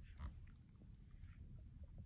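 A small dog chewing on a toy, faintly, with a brief louder animal noise about a quarter second in.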